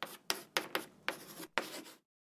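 Logo-reveal sound effect: a quick, irregular series of about five rasping swipe strokes, each starting sharply and fading, that stops abruptly at the end.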